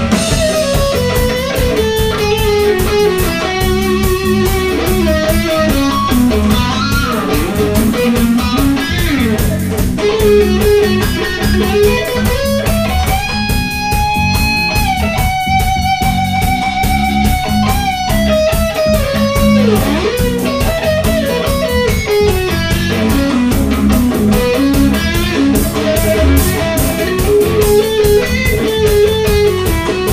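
Live instrumental rock trio: an electric guitar plays a winding lead line over electric bass and a drum kit, with one long held guitar note in the middle.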